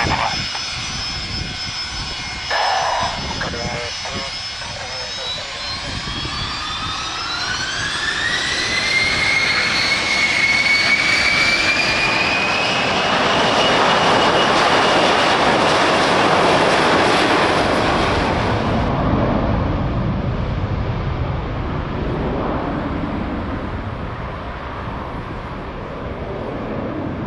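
Fokker 100's two rear-mounted Rolls-Royce Tay turbofans spooling up to takeoff power, their whine rising in pitch over a few seconds. The engines then run at full power through the takeoff roll and climb-out, loudest in the middle, and the sound fades away over the last several seconds.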